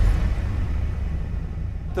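Steady low rumble of bass from a concert sound system, with a cymbal's wash dying away over about the first second.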